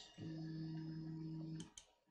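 Z-axis stepper motors of a Geeetech Prusa I3 Pro B 3D printer driving the threaded rods with a steady low hum for about a second and a half. The hum then stops abruptly, followed by two light clicks: the homing move cut short because the Z endstop switch is pushed by hand.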